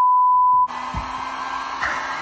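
A steady, high test-card beep for about the first half-second, cut off abruptly by a mini handheld hair dryer running with a steady whir.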